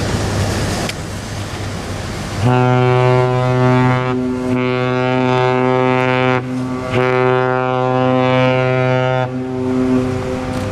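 A three-masted sailing cruise ship's horn sounding deep, rich blasts of about two seconds each, starting about two and a half seconds in, with short breaks between. Wind and water noise come before the horn.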